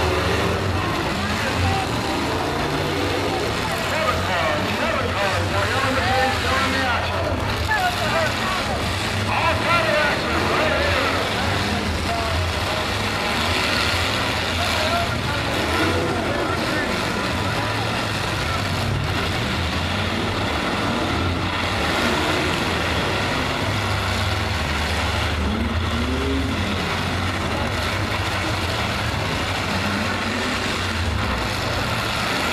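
Stock-class demolition derby cars' engines running in the arena, a steady low rumble, with the chatter of a crowd of voices over it.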